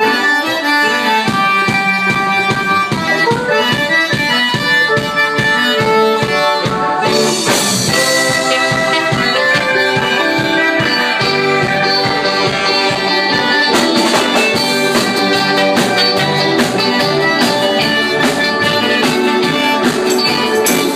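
Live band starting a song: drums keeping a steady beat under bass and electric guitar, with sustained accordion chords on top.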